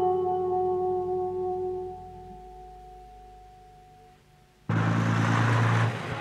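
Long held notes of soundtrack music fading away. About three-quarters of the way in, a motor coach's engine cuts in suddenly, running steadily with road noise.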